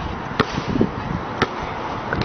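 Basketball dribbled on an outdoor hard court: two sharp bounces about a second apart, with a softer knock between them.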